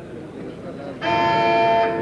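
Boxing ring timekeeper's signal sounding once between rounds, marking the end of the interval before the second round. It is a steady electric ringing tone that starts suddenly about a second in, holds at one level for about a second and cuts off sharply.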